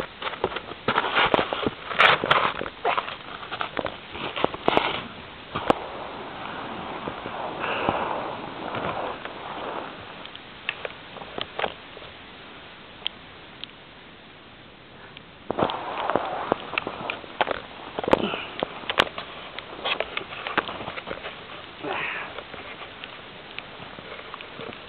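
Footsteps crunching in snow, irregular and in clusters, with a quieter stretch around the middle.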